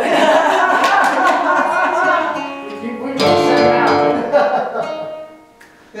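Acoustic guitar being played, picked and strummed loosely, with voices over it; it drops away shortly before the end.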